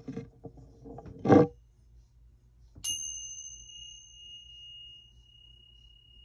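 A meditation bell struck once about three seconds in, giving one clear high tone that rings on and fades slowly, marking the end of the silent practice. Before it come handling rustles and a single loud thump about a second and a half in.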